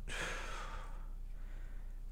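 A man sighing: a single breath out lasting about a second that fades away.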